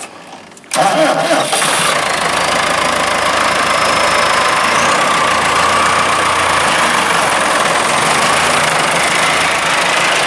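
Massey Ferguson 4345 tractor's diesel engine starting just under a second in, then running steadily and loud at close range as the tractor moves off.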